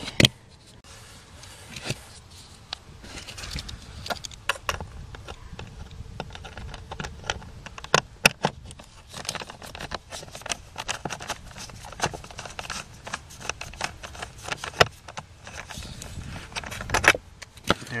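A hand tool with a chrome socket extension and Phillips bit turning out a blower motor resistor screw under a car's dashboard: many small irregular metallic clicks and rattles, with a few louder knocks.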